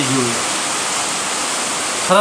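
A steady, even hiss without any pitch or rhythm, loud and constant throughout, after the tail end of a man's word at the very start.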